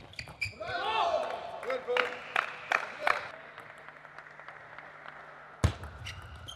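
Table tennis ball knocks as a rally ends, then a loud shout with a sliding pitch from a player who has won the point. Four sharp celluloid-ball knocks follow about a third of a second apart, and one louder knock comes near the end.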